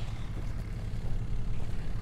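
Steady low rumble of a John Deere track tractor running as it pulls a tine drag over tilled soil.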